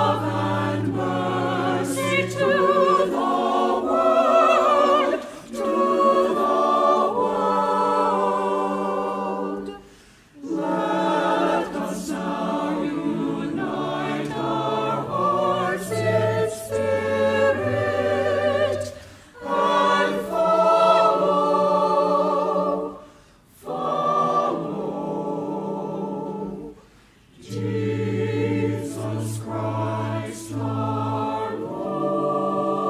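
Mixed church choir of men's and women's voices singing, in phrases broken by brief pauses.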